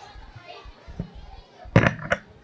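Murmur of a crowd of children chattering, with a short louder burst near the end.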